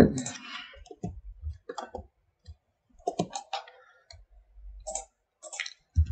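Irregular computer mouse and keyboard clicks, a few at a time with short gaps between them.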